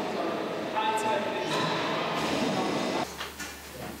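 Factory hall ambience: industrial machinery runs steadily, with several steady whining tones and indistinct voices in the echoing hall. About three seconds in, it changes suddenly to a quieter room with a low hum and a few short knocks.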